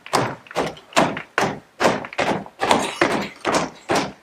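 Boots stamping on a stage floor in a marching drill: a quick, slightly uneven run of heavy thumps, about three or four a second, each ringing briefly in the room.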